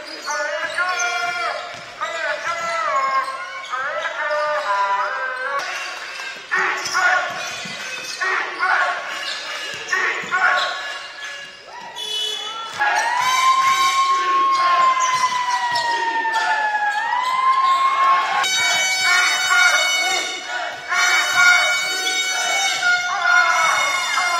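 Basketball game sound in an indoor hall: the ball bouncing on the court, with voices calling. From about halfway, a long drawn-out tone slowly falls in pitch, and steady held tones follow near the end.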